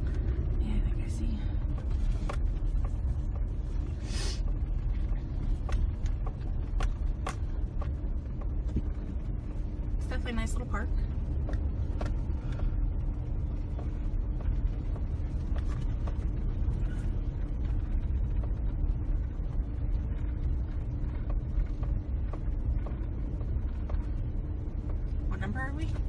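A truck rolling slowly over a gravel road, heard from inside the cab: a steady low rumble of engine and tyres, with scattered clicks and creaks.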